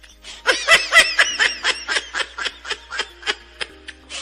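High-pitched snickering laughter: a loud burst about half a second in, then a run of quick short laughs that fades toward the end.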